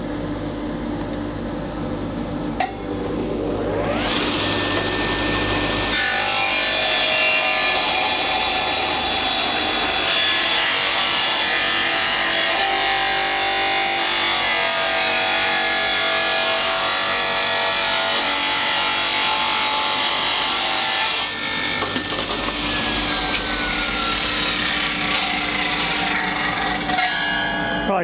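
Table saw ripping a thin strip off an ash board. The blade spins up with a rising whine about three seconds in, cuts loudly through the wood for about fifteen seconds, then runs free and winds down with a falling tone, over a steady background hum.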